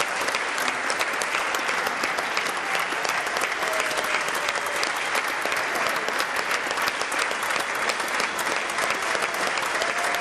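Steady applause from a sparse, standing audience of lawmakers clapping in a large hall.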